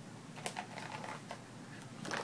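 A few faint, light clicks and clatter of computer accessories and packaging being handled, in a small cluster about half a second in and a few more around a second in.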